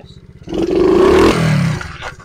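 Coolster 70cc pit bike's small single-cylinder four-stroke engine idling, then revved hard in first gear about half a second in, held for about a second with the pitch climbing, and dropping back toward idle near the end as the throttle is snapped open to pop the front wheel up.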